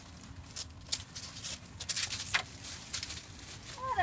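A small dog (Shih Tzu/Poodle mix) scrabbling and rustling as she squeezes through a narrow gap: a run of short, scratchy rustles, busiest in the middle.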